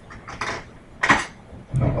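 Metal cutlery rattling and clinking as a spoon is picked out of a kitchen utensil drawer, with a sharper clatter about a second in.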